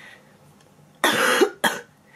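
A woman coughing twice into her fist, a longer cough about a second in and a shorter one just after it. The cough comes from the chest and throat infection she is ill with.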